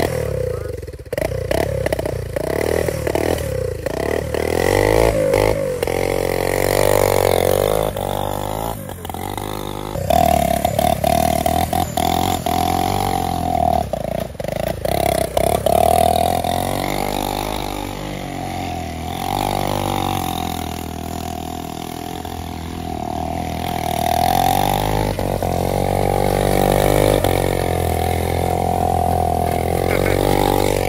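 Motorcycle engine of a shopping-cart go-kart being driven around, its revs rising and falling again and again, with several stretches held at higher revs.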